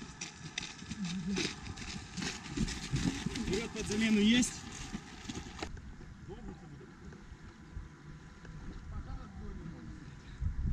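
Many feet jogging on a gravel road in an irregular crunching patter, with men's shouted voices, loudest a little before halfway. About halfway through it cuts off abruptly to quieter outdoor ambience with faint, distant voices.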